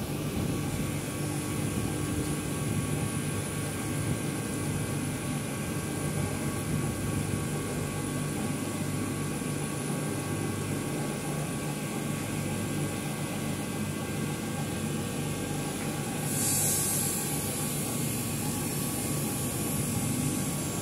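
CNC laser engraving machine running while its head engraves a sheet: a steady machine hum and whir, with a brief burst of hiss about three quarters of the way through.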